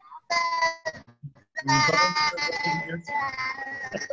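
Garbled, unintelligible voice audio coming through a video-call connection, in three short stretches, with a steady high whistling tone running through the later part.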